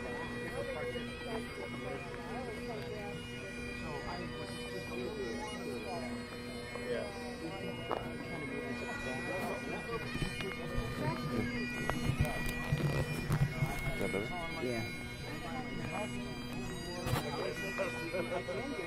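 Great Highland bagpipe playing, its drones holding a steady tone under the chanter, with indistinct voices talking over it.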